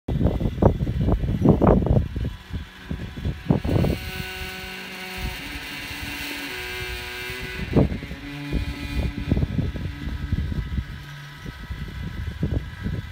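Yaesu G-5500 azimuth-elevation antenna rotator running, its geared motor drive grinding: a fault that shows after only 12 days of use. Its whine holds steady and steps in pitch through the middle of the clip. Gusts of wind buffet the microphone, most heavily in the first two seconds.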